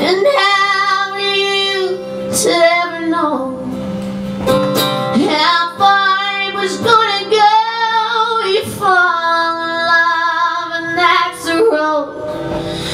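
A woman singing sustained, wavering notes in a country ballad, accompanied by a strummed acoustic guitar.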